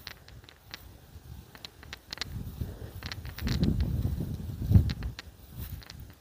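Wind buffeting the microphone in a low, uneven rumble that picks up about two seconds in and gusts loudest shortly before the end, over scattered light ticks and soft footsteps on grass.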